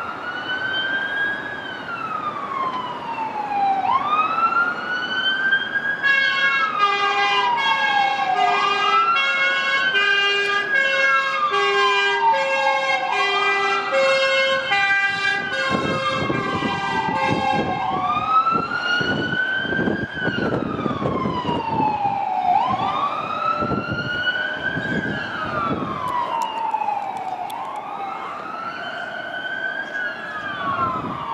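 Fire engine's emergency siren wailing, each cycle rising quickly and falling slowly, repeating about every three and a half seconds. For about twelve seconds in the middle, a two-tone horn alternates between two notes over the wail.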